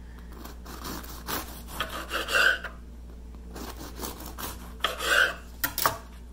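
Serrated bread knife sawing through the crust of a freshly baked egg-white baguette: two bouts of quick back-and-forth strokes, with a couple of sharp taps near the end.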